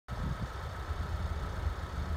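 A 2018 Chevy Colorado's 2.8-litre Duramax four-cylinder turbodiesel idling, a steady low rumble.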